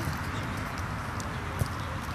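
A small dog pushing through dry grass. The grass rustles over a steady low rumble, with a few sharp clicks, the loudest about one and a half seconds in.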